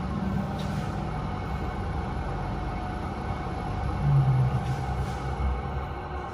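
Kone MiniSpace service lift in operation, heard inside the car: a steady low rumble and hum, with a brief louder low hum about four seconds in.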